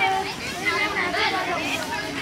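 A group of children talking and calling out over one another.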